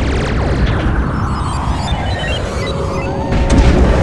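Cinematic logo-reveal sound design over music: a deep, steady bass rumble with sweeping whooshes, and a sharp hit about three and a half seconds in as the logo appears.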